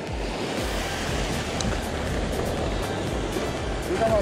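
Sea surge washing and foaming over a weed-covered rock ledge: a steady rushing wash of water.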